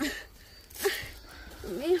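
A man's voice in short exclamations, three of them, the last being "Oh, Dios".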